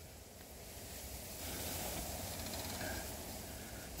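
A soft rustling hiss with no distinct strikes, swelling slightly about a second and a half in and easing near the end.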